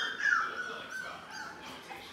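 Four-week-old Labrador puppies whining and squealing in high pitches as they play. The loudest squeal comes in the first half second, and the calls trail off after about a second and a half.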